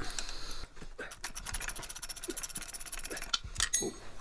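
Hand ratchet clicking rapidly and evenly while a bolt is backed out of the outboard's gearcase, then a few sharp metal clinks near the end.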